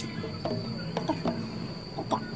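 Crickets chirping steadily in the background, with a few short squeaks that fall in pitch about half a second and a second in.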